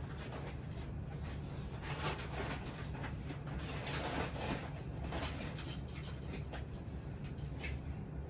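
Rustling and handling of a full plastic bag of clothes as it is taken out, in irregular bursts over a steady low hum.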